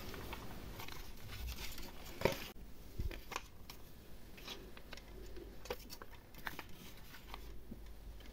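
Hard plastic toy house being handled: scattered light clicks and taps as its small plastic doors are opened and pushed, the sharpest a little over two seconds in.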